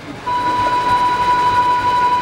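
A single steady held musical note from an accompanying instrument begins about a quarter second in and sustains without a break.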